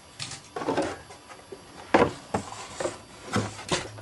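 Handling noises: a series of short knocks and rustles, about seven in all, as the camera is moved and things on a wooden surface are shifted and picked up.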